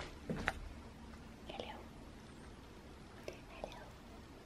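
Soft whispering, with a couple of light clicks near the start.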